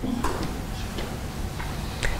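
A pause in a man's speech: steady room noise with a few faint small clicks.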